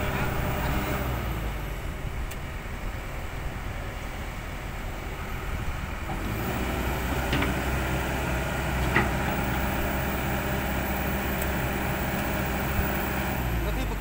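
Kobelco SK200 crawler excavator's diesel engine running steadily with a low hum and a few short clicks, stopping abruptly just before the end.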